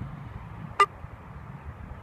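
Wind rumbling on the microphone, with one short sharp blip a little under a second in.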